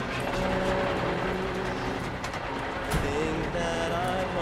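Indistinct voices over background commotion and music from a drama soundtrack, with a single knock about three seconds in.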